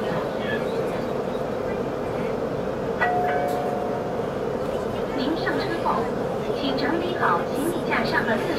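Inside the passenger cabin of a CRH6A electric multiple unit pulling out of a station: steady running hum with passengers talking. About three seconds in, a click is followed by a brief steady tone.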